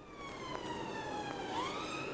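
Emergency vehicle siren wailing, heard from inside a car: one slow downward sweep in pitch, then rising again about one and a half seconds in.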